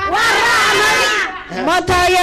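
A group of women cheering and shouting together in answer to a solo woman singing into a microphone. Her held sung note comes back in near the end.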